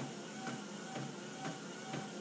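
Footfalls of quick, short walking steps on a treadmill belt, about two a second and evenly spaced, over a steady faint tone from the running treadmill. The quicker step rate is a raised walking cadence at the same belt speed.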